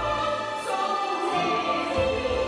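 A singer in Chinese opera style singing held, sliding notes into a microphone over an instrumental accompaniment, amplified through stage speakers.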